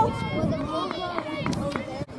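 Several voices calling out at once on a sports field, some high-pitched like children's, with a sharp click about one and a half seconds in.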